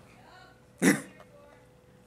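A man clears his throat once, briefly, about a second in. A faint steady room hum runs underneath.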